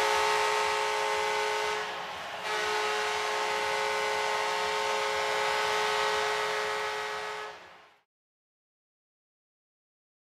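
Hockey arena horn sounding at the final buzzer as the home team wins, a steady multi-tone blast with a short break about two seconds in, over arena noise, fading out near the end.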